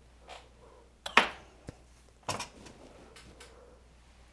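A few small clicks and taps of tools and materials handled on a fly-tying bench, the loudest about a second in and a short cluster just past two seconds.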